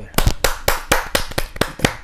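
Applause from a small audience: a handful of people clapping, the individual claps distinct and uneven, about five or six a second.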